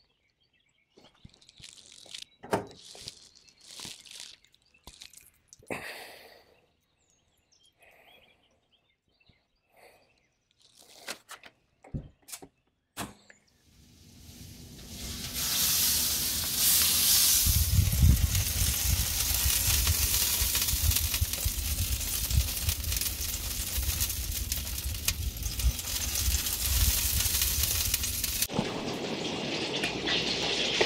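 Scattered knocks and clatters from handling while the pork shoulder is loaded into the home-built electric smoker. Then, from about halfway, a loud steady rushing noise with a low rumble, typical of wind buffeting an outdoor microphone, which cuts off suddenly near the end.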